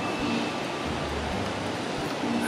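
Steady noise of city street traffic: an even rush with a faint low engine hum coming and going.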